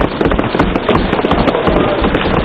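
Many members of parliament thumping their desks in approval: a dense, continuous run of knocks and low thuds.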